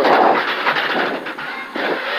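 Skoda Fabia R5 rally car at speed, heard from inside the cabin: its turbocharged four-cylinder engine under a dense rush of tyre and road noise. The sound eases off briefly near the end, then picks up again.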